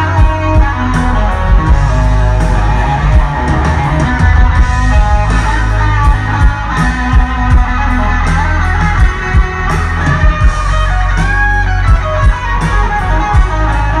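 Live rock band playing loudly: a Stratocaster-style electric guitar plays lead lines over bass and drums, with one note bent upward about three-quarters of the way through.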